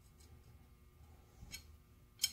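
Near silence: room tone, with one faint metallic tick about one and a half seconds in as a small knurled steel pin is handled against the end of a steel drawbar.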